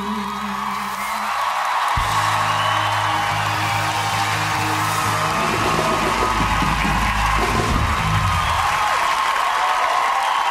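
A live band strikes its final chord about two seconds in and holds it until near the end, under a studio audience cheering.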